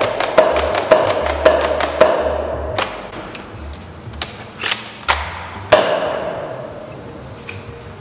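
A modified Nerf Rival Kronos spring blaster with a 13 kg spring and a six-round cylinder fires a rapid string of shots, about two a second, each a sharp crack with a brief ring. Around five seconds in come three sharp clicks and snaps as the blaster is worked for a reload.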